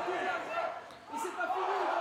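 Faint voices of players calling out on the pitch, heard across an empty stadium with no crowd noise, fading to a lull about a second in before picking up again.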